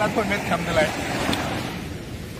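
Voices talking briefly over a steady rush of surf breaking on the beach.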